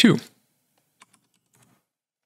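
A few faint computer-keyboard keystrokes, spaced apart, about a second in and again a little later.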